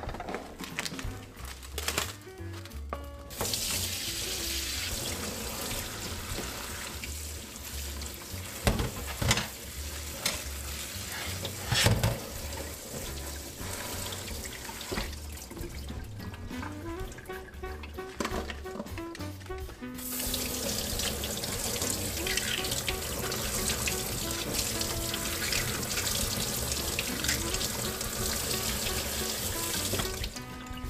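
Kitchen tap running into a stainless steel sink as greens and then peeled garlic cloves are rinsed in a wire mesh strainer, with a few clicks of handling; the water starts about three seconds in and gets louder near the middle. Background music plays throughout.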